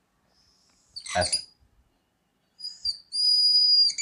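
Dry-erase marker squeaking on a whiteboard as lines are drawn: a short scratch, then a steady high-pitched squeal lasting about a second near the end. A brief sound about a second in is louder than the squeak.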